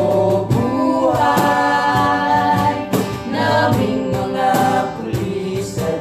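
A small group singing a song together, with an acoustic guitar strummed and a cajon (box drum) keeping a steady beat.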